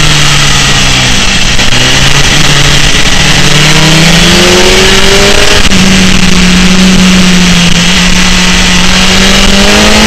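BMW S1000RR inline-four sportbike engine at track speed, heard from an onboard camera under heavy wind roar. The engine note drops as the bike slows for a corner in the first couple of seconds, climbs as it accelerates out, holds steady for a few seconds, then rises again near the end.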